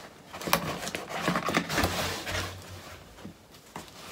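A cardboard shipping box being opened by hand: scraping and rustling of the cardboard lid and flaps with a few sharp clicks over the first three seconds or so, then quieter.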